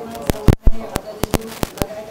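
A quick, irregular series of sharp clicks and knocks, about seven in two seconds, the loudest a heavy knock around half a second in, over faint background voices.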